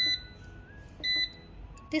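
Two short electronic beeps from a GOOTU hybrid inverter's touch-key control panel, one at the start and one about a second later, each confirming a key press while the battery-type setting is chosen.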